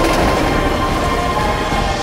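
Passenger train coach running along the track, its wheels and bogie sounding on the rails, under soundtrack music.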